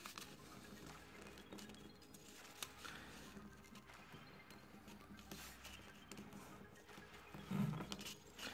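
Faint rustling and soft ticks of a sheet of origami paper being folded and creased by hand against a tabletop.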